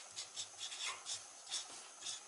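Marker pen writing on paper: a quick run of short, faint, scratchy strokes.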